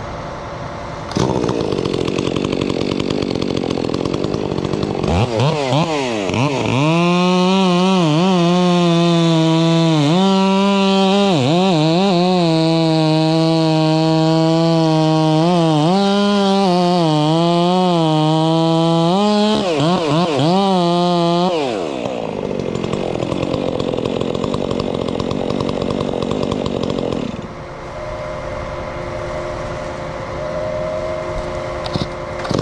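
Gas chainsaw running at full throttle and cutting into a tree limb for about fifteen seconds, its engine pitch dipping and recovering repeatedly as it bogs under load in the cut. Louder rushing noise comes before and after the cut, and the saw drops back to idle near the end.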